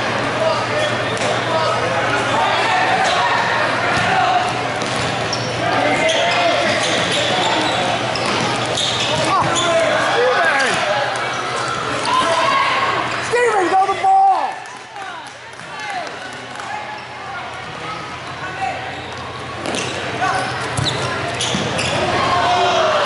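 Indoor futsal game in a large echoing hall: players and spectators shouting and calling, with the ball being kicked and bouncing on the wooden court. The loudest burst comes a little past halfway, around a shot on goal.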